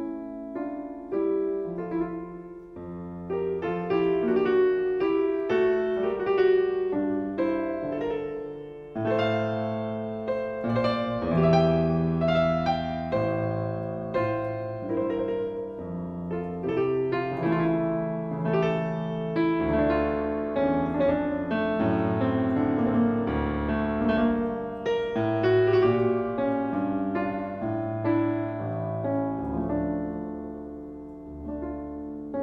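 Fazioli concert grand piano playing a slow, stately baroque sarabande in full sustained chords, without pause.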